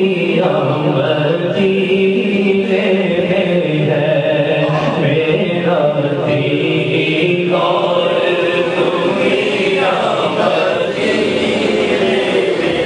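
Devotional vocal music: chant-like singing with long held notes that shift in pitch every second or two, with no break.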